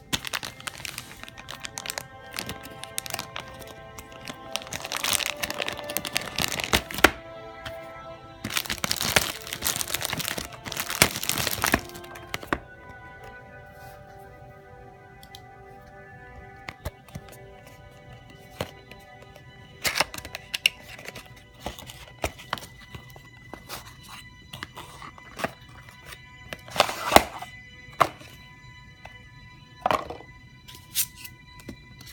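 Background music, with plastic packaging rustling and crinkling in two long stretches in the first half, then scattered clicks and knocks as coin boxes and capsules are handled.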